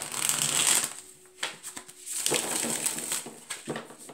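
A deck of cards shuffled by hand: rustling, flicking bursts as the cards slide and slap together. The first burst is loudest and fills the first second. A second, longer burst runs from about a second and a half in until shortly before the end.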